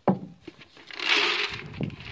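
Dry feed pellets being poured into a metal rabbit J-feeder: a rattling rush that starts about a second in and keeps going.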